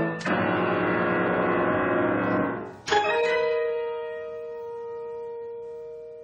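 Piano-like keyboard notes: a dense cluster of notes held for about two seconds, then a single struck chord about three seconds in that rings out and slowly dies away.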